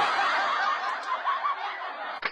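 Light giggling laughter, a run of short chuckles that bob up and down in pitch.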